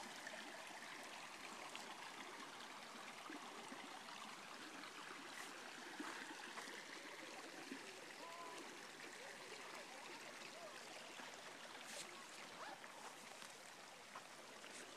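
Faint, steady rush of a creek running over rocks.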